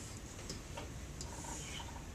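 Faint, irregular clicks and ticks over quiet room tone.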